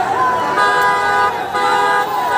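Vehicle horns held in long, steady blasts, with a short break about a second and a half in, over the shouting of a crowd.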